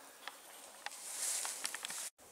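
Footsteps on a gravel path: a few light, uneven crunching steps with a short gritty hiss near the middle.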